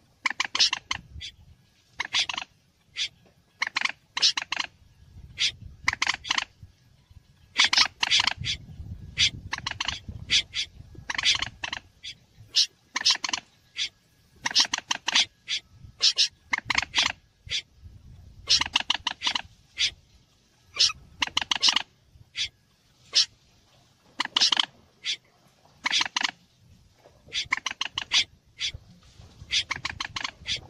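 Bird-lure recording of moorhen and snipe calls: short bursts of rapid, harsh clicking notes repeating about once or twice a second.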